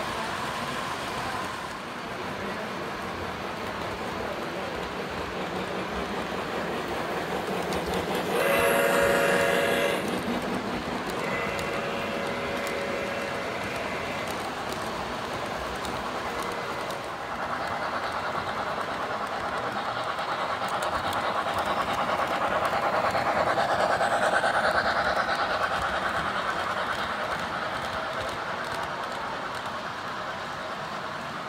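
O gauge model trains running on the layout, wheels clicking over the track joints and motors humming. About eight seconds in, a model locomotive's sound unit blows a loud horn for a second or two, then a fainter, longer blast follows. From about seventeen seconds in a train passes closer and the running noise grows louder, then fades near the end.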